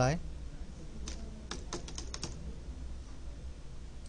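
Computer keyboard typing: a quick run of several keystrokes about a second in, typing a short word.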